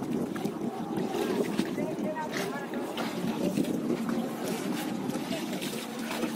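Pond water splashing and sloshing as a fishing seine net is dragged through the shallows and hauled in by hand, with several men talking over it.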